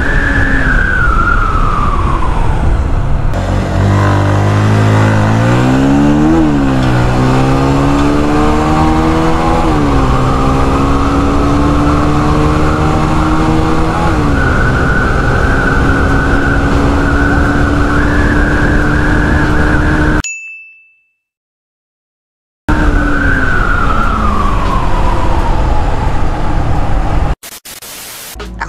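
Bajaj Pulsar 150's single-cylinder air-cooled engine accelerating hard through the gears, its pitch climbing and dropping back at each of three upshifts, with wind rush on the microphone. Before it a motorcycle engine note falls as it slows; after a gap, another falling engine note, then a short burst of glitch noise at the end.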